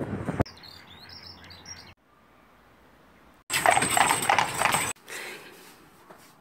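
A string of short, unrelated snippets. Small birds chirp faintly over open country for about a second and a half, then comes a quiet stretch, then a loud rush of noise lasting over a second, starting about three and a half seconds in.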